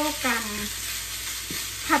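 Minced pork and pork skin sizzling in a nonstick frying pan over low heat while a wooden spatula stirs and scrapes it, a steady hiss of frying throughout.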